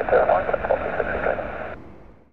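Air traffic control radio transmission: a voice heard through a narrow-band radio channel, over a low rumble. The radio voice cuts off abruptly near the end and the rumble fades away.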